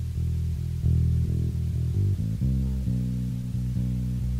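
A bass guitar playing a slow line of held low notes on its own, with nothing above the low register. The notes change more often in the second half.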